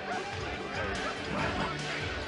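Background music playing, with faint voices underneath.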